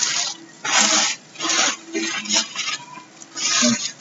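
Clear plastic bags full of jigsaw puzzle pieces being picked up and shuffled across a table, crinkling in several short bursts as the loose pieces shift inside.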